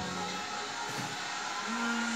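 Suspense music from a televised pageant, heard through the TV's speakers: a steady held drone, with a new low note coming in near the end.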